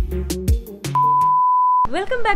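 Background music with drum hits fading out, then a single steady high-pitched electronic beep lasting about a second that cuts off sharply.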